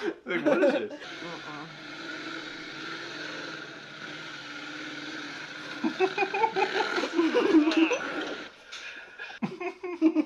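A motorcycle engine running steadily, with people's voices coming in over it from about six seconds in. A short laugh comes right at the start.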